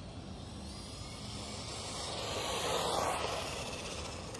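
Traxxas Mini E-Revo VXL 1/16 brushless RC truck running on pavement: a high electric-motor whine that bends in pitch over tyre noise, swelling to a peak about three seconds in and then fading as it passes.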